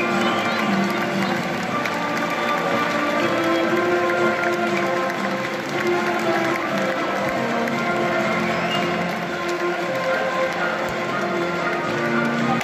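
Walk-out music playing over a football stadium's public address, with the crowd's steady noise beneath it.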